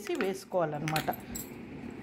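A steel spoon clinks lightly against a white bowl as sabudana and curd are stirred, with a few faint taps.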